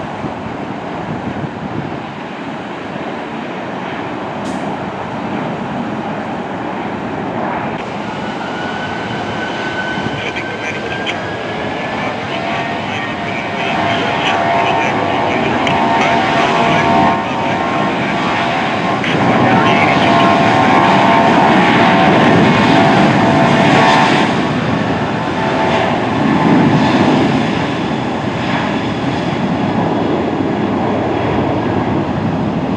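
Jet engines of a Southwest Boeing 737-700, CFM56 turbofans, spooling up to takeoff thrust. A rising whine comes in about a quarter of the way through, then a buzzing fan tone joins a jet roar that grows louder as the aircraft accelerates down the runway.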